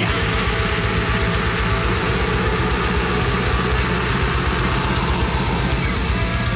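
Extreme metal song: a drum kit plays fast double-bass kick drum runs with cymbals over guitars.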